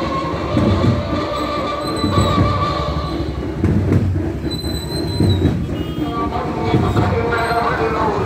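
Street procession music: a steady low drum beat, somewhat under two beats a second, with wavering high piping tones over the noise of a marching crowd and motorbikes.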